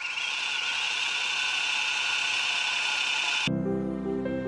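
A longarm quilting machine runs with a steady whir, then cuts off suddenly near the end as soft music begins.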